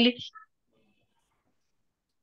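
A woman's voice finishing a word in the first instant, then near silence.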